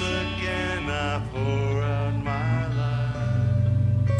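Live worship music: a man singing long, wavering notes over a band with electric guitars and a steady low bass note.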